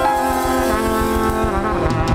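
Live jazz combo: a trumpet playing held notes over piano, double bass and drums, with a few cymbal strokes near the end.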